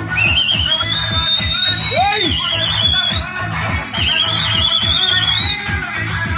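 Loud dance music with a steady beat. A high, wavering whistling tone sounds over it twice, first for about three seconds, then again for a second and a half.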